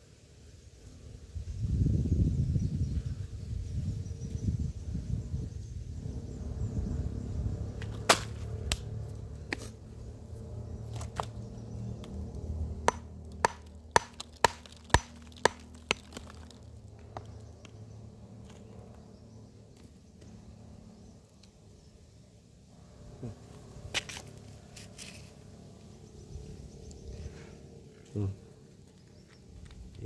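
A small hammer striking stone in a series of sharp knocks, about a dozen, coming closer together to about two a second around the middle, with one more strike later on.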